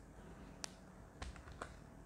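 A few faint clicks from a computer keyboard and mouse: one sharp click about two-thirds of a second in, then three quicker ones a little past a second.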